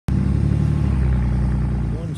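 A motor vehicle's engine running close by: a steady, loud, low rumble.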